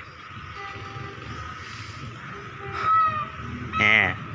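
Diesel locomotive horn sounding as two passing trains greet each other, held as a steady tone and louder for a moment about three seconds in, over the low rumble of a train.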